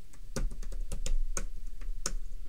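Typing on a computer keyboard: a quick, irregular run of keystrokes starting about a third of a second in.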